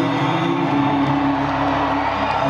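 Live acoustic country music: a strummed acoustic guitar with a slide-played resonator guitar holding gliding notes, with audience cheering and whoops underneath.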